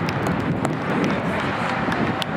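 Steady wind rumble on the microphone at an outdoor sports field, with a few sharp clicks and faint distant voices.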